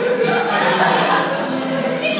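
A group of people singing together.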